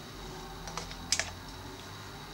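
A few light clicks from plastic hair-styling tools, a tail comb and clips, handled in the hair. The sharpest click comes just after a second in, over a faint steady room hum.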